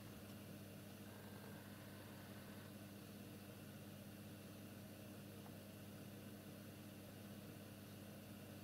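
Near silence: room tone, a faint steady low hum with hiss.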